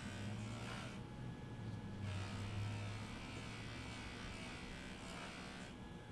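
JoolTool Lite bench polisher running with a polishing wheel spinning, a steady low motor hum. A sterling silver cuff is pressed against the wheel, which adds a hiss of buffing that briefly eases just after a second in and drops away near the end.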